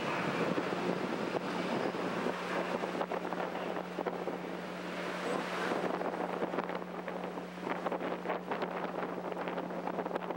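Wind noise on a microphone over a steady low hum, with scattered faint crackles in the second half.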